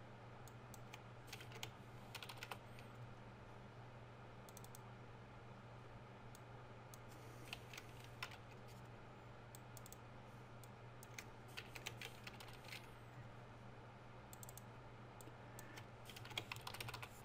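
Faint computer keyboard typing in short bursts of clicks, with pauses between, over a steady low hum.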